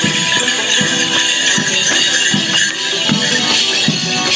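Border morris dance music, with held reedy notes and a low beat about every three-quarters of a second, under the jingling of bells on the dancers' legs.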